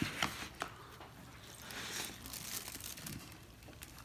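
A bite taken out of a burger and quiet chewing, with a few sharp crinkles near the start and faint crackling after.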